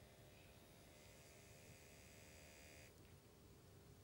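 Near silence: faint steady hiss and hum of room tone.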